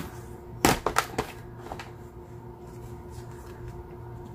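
Clear plastic stamp-set cases clacking as they are handled and set down: a few sharp clicks close together about a second in, over a low steady hum.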